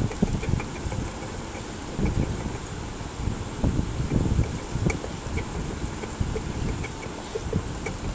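A long metal rod stirring liquid in a steel pot: irregular low scraping and sloshing, with occasional soft knocks of the rod against the pot.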